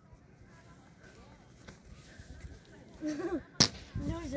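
A single sharp, loud slap close by, about three and a half seconds in, just after a short excited voice.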